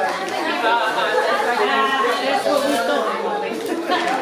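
Several voices talking over one another: indistinct chatter with no single clear speaker.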